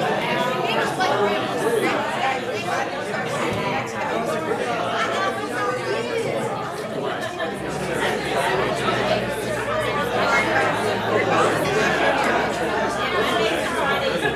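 Many people talking at once in a large hall, a steady overlapping chatter of voices with no single speaker standing out. A low steady hum comes in about halfway through.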